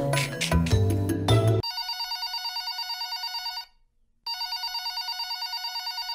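Background music that stops about a second and a half in, followed by a mobile phone ringing. The ring is an electronic trill that rings twice, each ring about two seconds long, with a short pause between them.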